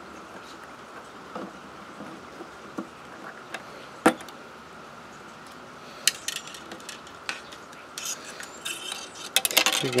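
Small metallic clicks and light rubbing from hands handling a guitar pickup's endpin jack and a pull-through wire at the endpin hole. One sharp click about four seconds in is the loudest, and a scatter of clicks comes near the end, over a faint steady hum.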